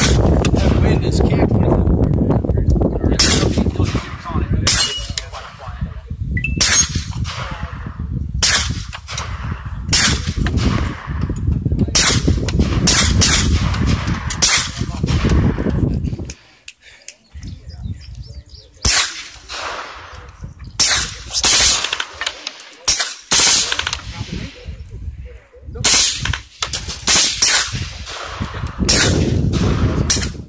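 Suppressed firearms firing repeatedly, single shots and quick strings of several shots, each report ringing out briefly across the range. A low rumble on the microphone runs under the first half and stops about sixteen seconds in.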